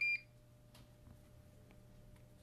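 A single short high electronic beep from a handheld turbidity meter right at the start, followed by a low steady hum and a few faint ticks.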